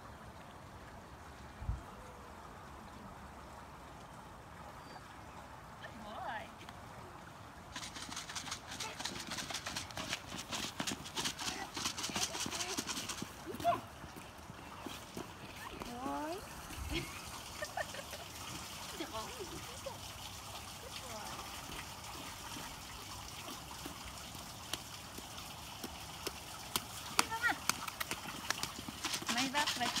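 A miniature pig's small hooves tapping rapidly on asphalt as it trots, a quick run of light clicks that starts several seconds in and keeps going, with voices now and then.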